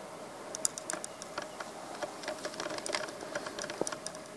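Faint, irregular light clicks and ticks, several a second, over a faint steady hum.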